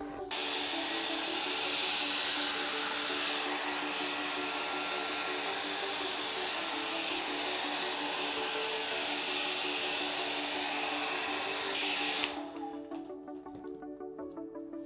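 Handheld hair dryer blowing steadily, blowing wet acrylic pour paint across a canvas, with background music underneath; the dryer switches off about twelve seconds in.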